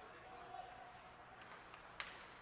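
Near silence: faint hockey-rink ambience under the broadcast.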